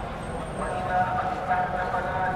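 Layered street soundscape: a murmur of voices mixed over steady traffic noise, with short held tones rising out of it.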